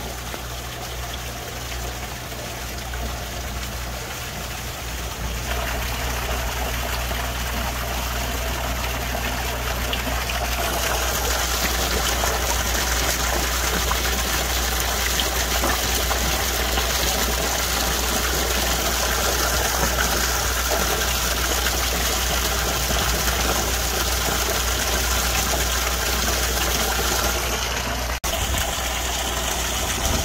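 Steady rush and gurgle of pond water, from the airlift circulator's outflow bubbling at the floating garden pad and a small rock waterfall, over a low steady hum. It grows louder about five seconds in and again about ten seconds in.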